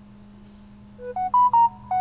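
Short electronic notification chime: a quick run of about five pure-toned beeping notes that climbs and then steps back down, starting about halfway through.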